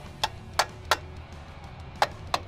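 Sharp metal clicks, about three a second, from a screwdriver working on parts of the dune buggy's engine, over steady background music.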